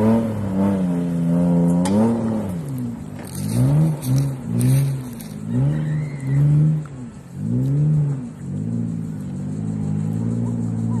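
Mitsubishi Pajero's engine revving hard on a steep loose-gravel climb. It holds high revs at first, then surges up and falls back over and over, about once a second, as the throttle is worked for grip.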